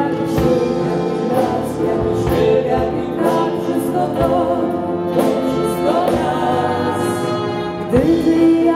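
Live pop band with saxophone and brass playing, a man and a woman singing a duet over a steady beat.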